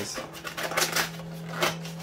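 Hands tearing into a sealed Pokémon card collection box: a few short crackles and rustles of its wrapping and cardboard.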